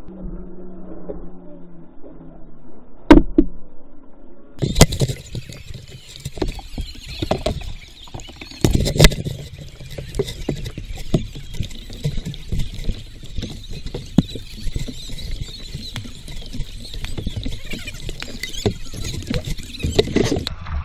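Water splashing and crackling against an action camera held low on a paddled kayak, with frequent sharp knocks. The first few seconds are muffled with a couple of thumps; from about five seconds in a steady crackle and hiss of water takes over.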